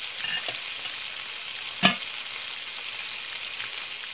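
Food frying in a hot pan: a steady sizzle that fades out near the end, with one sharp knock about two seconds in.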